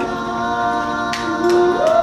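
A cappella boys' vocal group singing a sustained chord in close harmony. One voice slides upward near the end.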